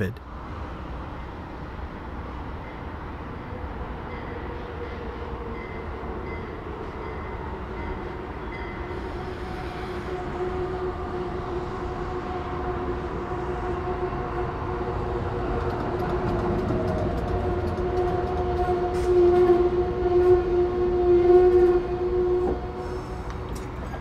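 Amtrak Keystone push-pull passenger train pulling into the station cab car first and slowing to a stop. It makes a steady rumble with a high whine that grows louder as the train draws alongside, loudest shortly before it stops.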